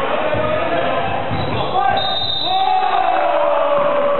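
Basketball bouncing on a hardwood court during play in a large echoing sports hall, with players shouting over it.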